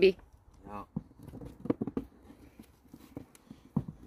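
Hands digging through soil and potatoes in a fabric grow bag held over a plastic tub: scattered soft rustles and light knocks, with a brief murmur of a voice just under a second in.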